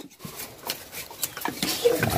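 Scattered light clicks and scrapes of knives peeling cassava roots and roots being handled, with faint voices in the background.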